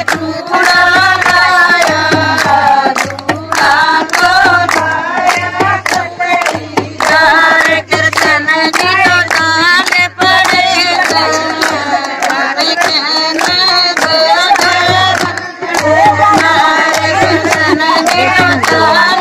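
Group of women singing a Haryanvi folk bhajan together, with steady hand claps keeping time.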